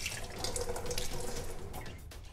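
Water running steadily from a kitchen tap into the sink.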